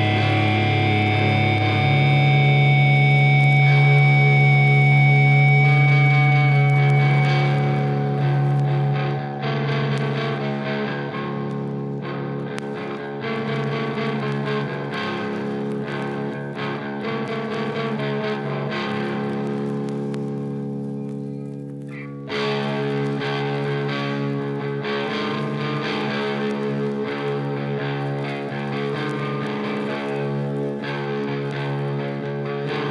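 Recorded hardcore music: distorted electric guitar and bass playing long held chords. The sound dips briefly about two-thirds of the way through, then the full band cuts back in abruptly.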